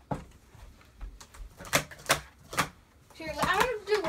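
Plastic sport-stacking cups clacking as they are handled on the table: about five sharp clicks spread over three seconds. A voice comes in near the end.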